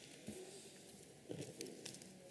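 Quiet room tone from an open microphone, with a few faint, brief soft sounds.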